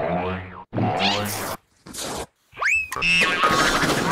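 Cartoon-style comedy sound effects: a run of short pitched tones, each cut off abruptly by a brief silence, with a short hiss and a quick whistle-like pitch glide about two and a half seconds in.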